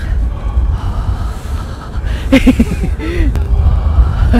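Wind buffeting the phone's microphone as a low rumble, with a brief burst of voice sounds a little past halfway.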